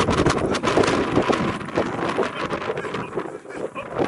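Wind buffeting the microphone, with a patter of quick footfalls and scuffs of cleats on artificial turf. It is busiest for the first two seconds or so, then thins out.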